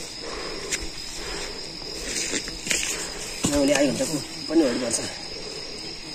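Steady high-pitched drone of insects chirring on the hillside, with a voice speaking a few words about halfway through.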